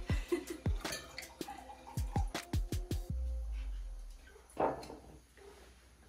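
White wine glugging from a glass bottle into wine glasses: a few quick glugs at the start, then a faster run of glugs about two seconds in, with soft background music underneath.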